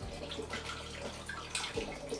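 Apple juice pouring from a carton through a plastic funnel into a glass demijohn: a steady splashing stream of liquid, with a few brief gurgles.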